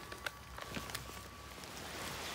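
A wind chime's single note ringing on faintly and dying away about three-quarters of the way through, with a few faint taps and a soft hiss that grows near the end.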